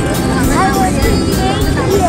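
Crowd of people talking with music playing in the background, over a steady low rumble.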